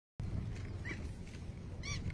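Outdoor ambience with a steady low rumble, and an animal's short high-pitched call twice, faint about a second in and louder near the end.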